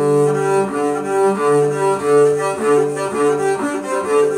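Double bass bowed with quick back-and-forth strokes on sustained notes. The tone swells and dips at each bow change, about two to three strokes a second.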